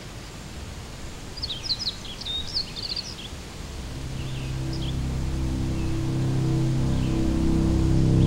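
Quiet woodland ambience with a small bird's quick, high chirps in the first few seconds, then a low, held music drone that fades in and swells steadily.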